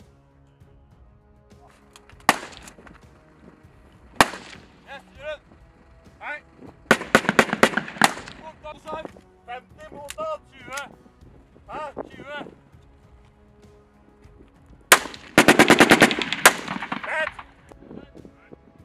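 Small-arms gunfire on a live-fire range: two single shots, then a quick string of shots about seven seconds in, and a fast burst of about ten shots near the end.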